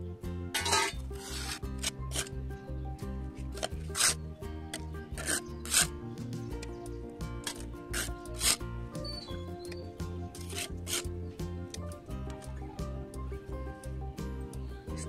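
Soil being scraped up and dropped into a terracotta pot: a series of short, sharp gritty scrapes at irregular intervals. Background music with a steady beat plays underneath.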